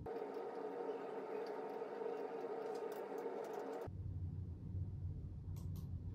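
Computer mouse clicking a few times as calendar options are selected, two quick clicks near the end. A steady hum runs under the first four seconds and cuts off suddenly.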